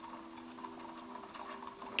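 Quiet TV-episode soundtrack: a soft, steady low drone of a few held tones.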